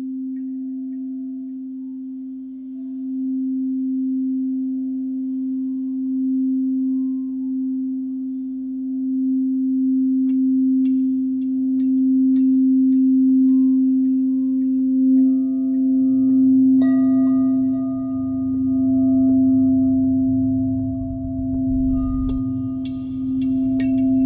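Ambient electronic music opening on a single steady low drone tone with faint higher tones above it. Sparse high clicks come in about ten seconds in, and a deep bass layer and brighter higher tones join about two-thirds of the way through.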